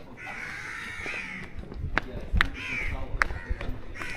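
Crows cawing: a long, harsh run of calls through the first second and a half and a short call near the end, with a few sharp clicks between.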